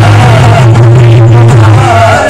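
Qawwali music, loud: harmonium notes held steady over regular hand-drum beats.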